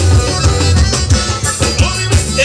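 Live forró band playing: accordion, electric bass, guitar and drum kit over a steady dance beat.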